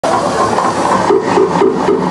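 Harsh noise electronics played loud: a dense wall of hissing noise that, about a second in, breaks into a rapid even pulsing of roughly four beats a second.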